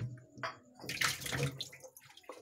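Water splashing around a turtle in a shallow tub: a short splash about half a second in, then a louder, longer splash lasting most of a second.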